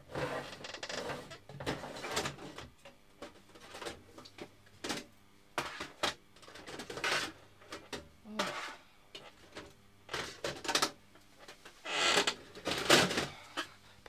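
A squeaky chair creaking and squeaking as the person sitting in it shifts and reaches, mixed with scattered clicks and rustles of things being handled, with a longer, noisier stretch near the end.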